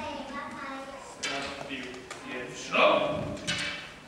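Indistinct voices speaking in a large, echoing hall, with a few short knocks.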